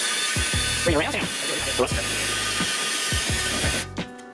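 Wire wheel brush spun by a cordless drill scrubbing corrosion off a steel motorcycle rim: a steady, harsh grinding hiss that stops suddenly just before the end.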